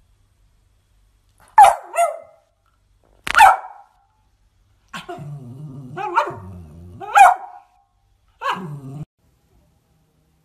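A dog barking in a play bow, an invitation to play: a quick pair of sharp barks, a single bark, then a low growly grumble with barks over it, and a last bark with a growl near the end.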